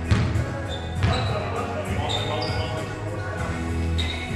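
A basketball bouncing on a hardwood gym floor, with two sharp bounces about a second apart, echoing in a large gym over background music.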